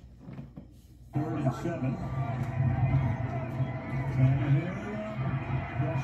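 Game broadcast audio of an NFL telecast cutting in abruptly about a second in, after a second of faint room sound: a commentator talking over steady stadium crowd noise.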